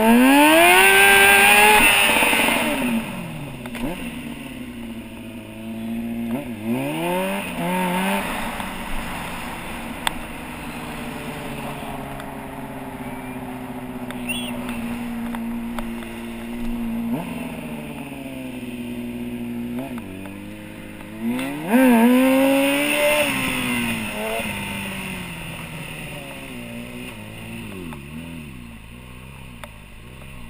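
Stunt motorcycle engine revving hard right at the start and again about 22 seconds in, with a shorter rev around 7 seconds and a long steady throttle between, as the bike is held up on its back wheel in a wheelie. The revs drop and it grows quieter near the end.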